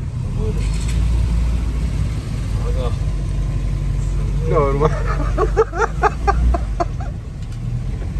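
1949 Austin A40's 1.2-litre four-cylinder engine running in first gear, a steady low rumble heard from inside the cabin as the car moves along. A voice speaks briefly about halfway through.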